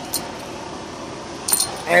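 Two brief light metallic jingles, a faint one just after the start and a louder one near the end, over a steady background hum.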